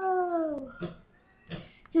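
A dog's long drawn-out whine, its pitch falling as it fades out under a second in.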